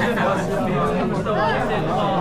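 Many men talking over one another in a steady chatter.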